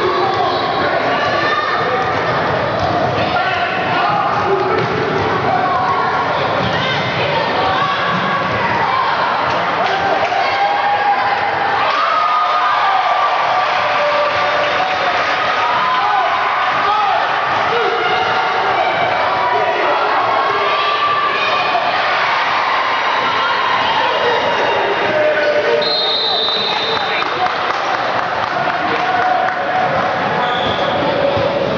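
Basketball dribbled and bouncing on a hardwood gym floor, under a steady hubbub of indistinct spectator voices echoing in the hall. A brief high-pitched squeal sounds about three quarters of the way through.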